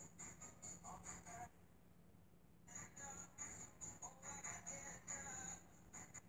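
Faint live pop-band music with singing, heard quietly from a TV, with a brief drop about a second and a half in before it picks up again.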